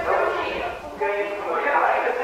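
Young people's voices talking on a scrambled CCTV recording, garbled and hard to make out, with a short break about a second in.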